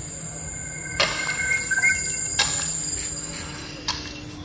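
Electronic sound-art tones: a steady high tone that stops about three-quarters of the way through, with shorter chirping tones that rise slightly in pitch, and sharp clicks about a second in and again near the middle.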